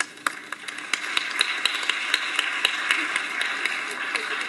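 Audience applause: a few scattered claps that swell within about a second into steady clapping.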